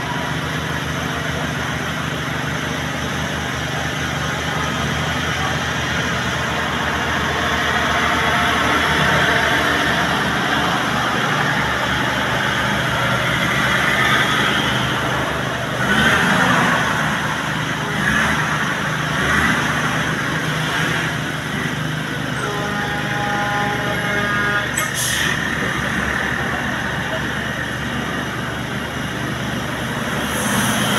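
Road traffic: a heavy truck's engine and tyres grow louder and pass by near the middle, over a steady hum of other passing vehicles. Later a brief steady tone sounds, followed by a click.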